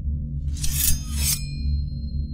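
Low droning background music with a shimmering sound effect laid over it: two quick bright swishes about half a second apart, leaving a high ringing tone that lingers.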